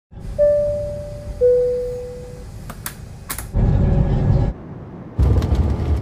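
A descending two-note chime, each note struck and fading, followed by a few sharp clicks and two loud, roughly second-long bursts of rumbling noise.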